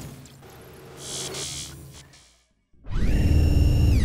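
Logo intro sound effect: a quiet low hum with a short high hiss, a brief silence, then a loud electronic tone rich in overtones that drops in pitch as it ends.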